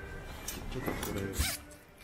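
A jacket zipper being pulled in a few short, quick strokes; the loudest comes about a second and a half in.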